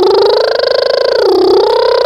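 A child's voice holding one long drawn-out call on a single vowel. The pitch climbs slowly, sags briefly in the middle, then rises again.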